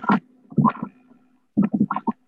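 A voice breaking up over a video-call connection: short, garbled fragments with gaps between them, over a faint steady hum.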